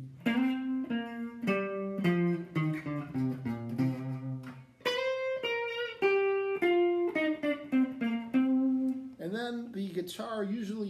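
Clean-toned hollow-body electric archtop guitar playing a single-note funky blues line, one plucked note at a time in two descending phrases, the second starting higher about halfway through, with a few notes slid into.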